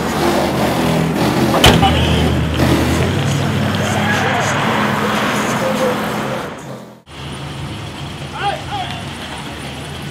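An old sedan's engine running under men's voices, with a car door shutting once just under two seconds in. About seven seconds in the sound cuts off abruptly and resumes as a quieter steady engine hum.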